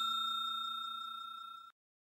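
Bell-like chime sound effect ringing out and fading steadily, cut off short about one and a half seconds in.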